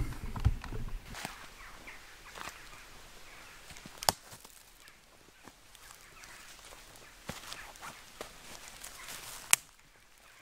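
Slow footsteps through woodland leaf litter, twigs snapping underfoot as separate sharp cracks a second or more apart, the loudest about four seconds in and just before the end.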